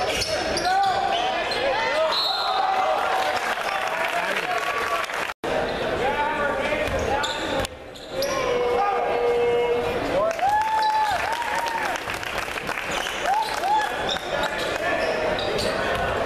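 High school basketball game in a large echoing gym: sneakers squeaking on the hardwood floor in short bursts, a basketball bouncing, and crowd chatter. The sound cuts out for an instant about five seconds in.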